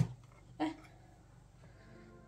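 A single sharp click at the very start, then a short voice-like sound about half a second in, then a quiet room with a faint low hum.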